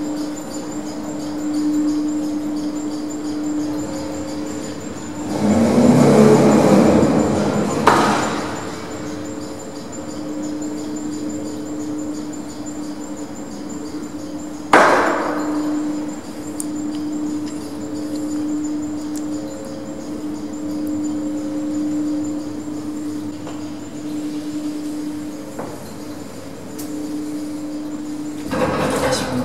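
Lift car travelling down its shaft, heard from the car roof: a steady hum that swells and fades every couple of seconds, with a louder rushing spell about five to eight seconds in and one sharp clank about halfway.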